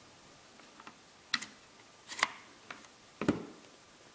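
A few short, sharp clicks and taps about a second apart, ending in a duller knock: copper pennies being taken out of the terminal slots of a Makita 18V lithium-ion battery pack and a plastic terminal adapter fitted onto it.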